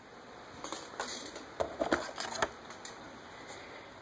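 Faint handling noise: a handful of small clicks and rustles during the first half or so, then only a low hiss.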